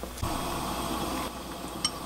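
Doenjang stew bubbling as it comes to the boil in a glass pot, with a soft knock just after the start and a light click near the end.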